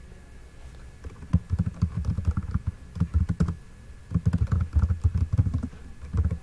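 Typing on a computer keyboard: quick runs of keystrokes with a dull thud under each, in three bursts with short pauses between.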